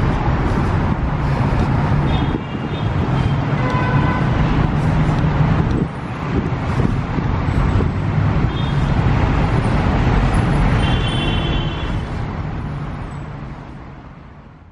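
Steady city street traffic noise from passing vehicles, fading out near the end.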